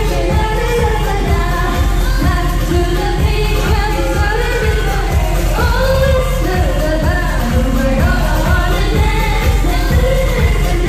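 Live performance of a K-pop dance song: a female voice sings over a loud backing track with a steady kick-drum beat, about two beats a second.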